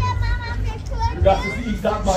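Voices in an outdoor crowd, led by a child's high voice at the start, then indistinct talking, over a steady low rumble.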